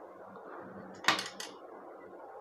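A quick cluster of small, sharp clicks about a second in: the mosquito racket's circuit board and wires being handled against its plastic handle housing.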